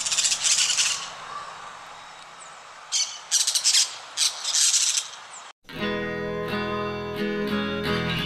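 Parakeet giving repeated harsh screeching calls in several bursts over an outdoor background hiss. About two-thirds of the way in the sound cuts off sharply and strummed acoustic guitar music begins.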